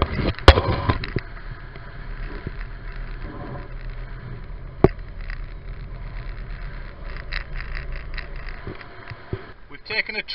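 Steady low rumble of a boat under way at sea, with a haze of wind and water noise; it eases off about seven seconds in. Two sharp knocks cut through it, a loud one just after the start and another about five seconds in.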